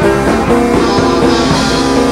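A live rock band playing loudly and steadily: strummed acoustic guitar over electric bass and drum kit.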